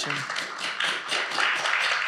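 Audience applause: many people clapping at once, steadily throughout.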